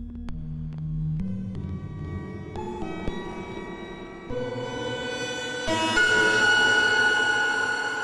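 A dissonant, detuned synthesizer patch in Arturia Pigments 4 plays sustained chords that step to new pitches every second or so. It grows brighter as a macro opens its filter cutoff.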